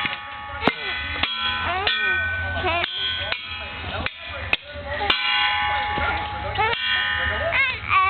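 Toy drum struck unevenly with a stick, about ten sharp hits, over steady electronic chiming tones from the toy.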